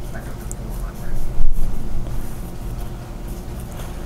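A paintbrush stirring and dabbing acrylic paint on a plastic-covered palette, a faint scratchy rustle with a louder swell about a second and a half in, over a steady low hum.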